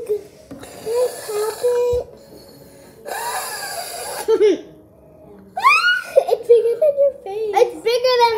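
A child blowing hard through a straw into a bubble of slime: her breath hisses in two long puffs, with short pitched voice sounds between them. Rising squeals and laughter fill the second half.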